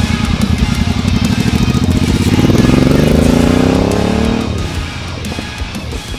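Motorcycle engine running with an even, lumpy beat, then revving up as the bike pulls away, its pitch rising for about two and a half seconds before it cuts off, over background music.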